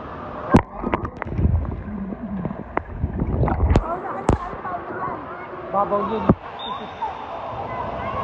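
Voices talking in the background, with several sharp knocks and clicks and a few low thumps scattered through.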